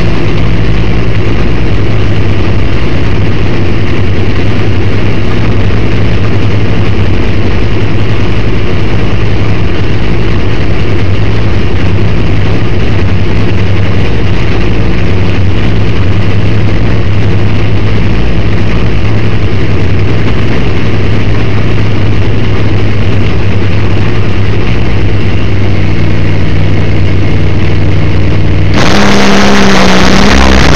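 NHRA nitro funny car's supercharged V8 running at a steady idle, heard from inside the cockpit and so loud that the recording is overloaded. About a second before the end the sound changes abruptly, becoming fuller and louder.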